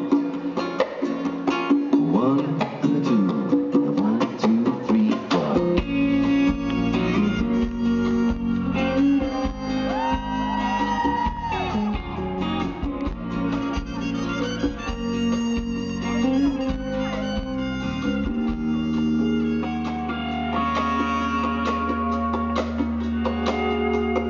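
Live band playing the instrumental intro of a song, led by acoustic guitar. The bass and the rest of the band join about six seconds in.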